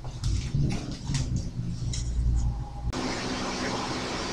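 Low bumps and rustling, then an abrupt edit about three seconds in to steady room hiss with a faint hum.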